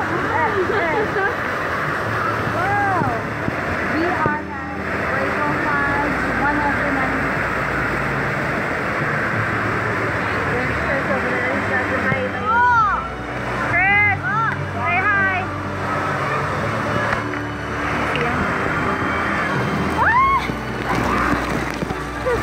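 Steady rush of water under a raft on an indoor water-park tube ride, with riders shrieking and yelling in short high cries, most in a cluster just past the middle and again near the end.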